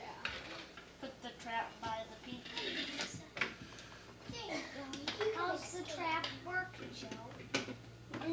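Children's voices talking, untranscribed, with a few sharp clicks and a low steady hum that comes in about five seconds in.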